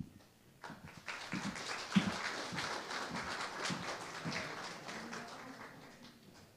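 Audience applauding. The clapping starts about half a second in and dies away near the end, with one sharper knock about two seconds in.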